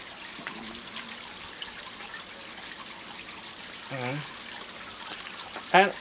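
Faint, steady hissing and crackling from a potassium permanganate and glycerol reaction smoking inside a cardboard Pringles tube. A brief hum from a voice comes about four seconds in.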